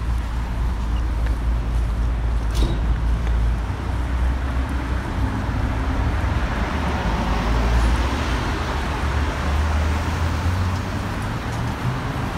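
City street traffic: cars running along the road, a steady low rumble with tyre and engine noise that swells as a vehicle passes about eight seconds in.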